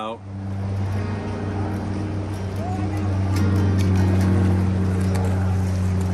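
Background music fading in just after speech ends, built on a steady sustained low note, with faint clicks joining about three seconds in.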